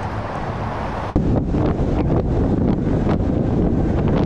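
Steady freeway traffic noise, then about a second in a sudden cut to louder road and wind noise from a camera riding in a moving vehicle on the freeway, with wind buffeting the microphone.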